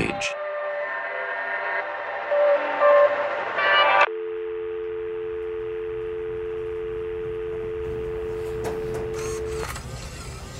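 Sustained synthesizer chords, with a few higher notes swelling, cut off suddenly about four seconds in. A steady two-tone telephone dial tone with faint line hiss follows and stops shortly before the end.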